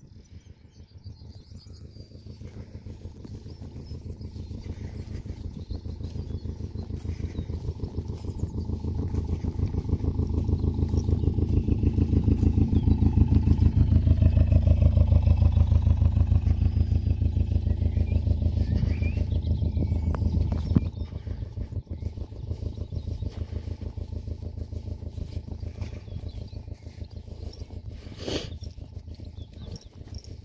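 An engine running with a steady low throb, growing louder for about half the time and then fading, with a sudden drop in level about three-quarters of the way through.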